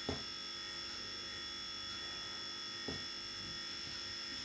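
A steady electrical buzz with a high-pitched whine, with two faint clicks, one just after the start and one near three seconds in.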